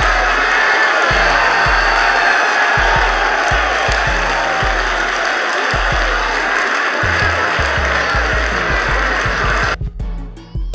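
Large crowd cheering and shouting, with background music's low bass notes underneath; both cut off sharply just before the end.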